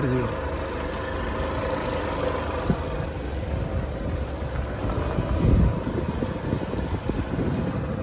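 A motor vehicle's engine running steadily, with wind rumbling on the microphone, loudest about five and a half seconds in.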